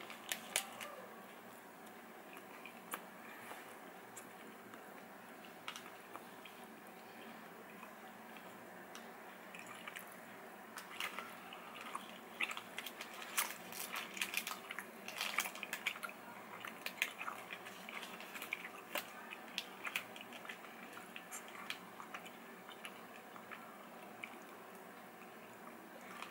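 Faint, close-up chewing and mouth clicks of a person eating a soft caramel-cashew protein bar. The clicks are scattered and irregular, coming most often through the middle of the stretch.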